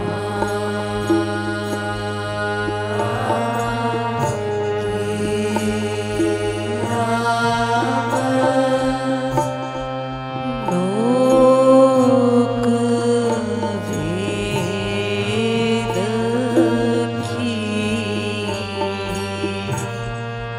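Hindu devotional kirtan music: a harmonium holding steady chords under a sung, chant-like melody.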